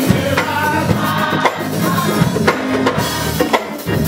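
Live gospel music: a church choir singing over a drum kit and keyboard.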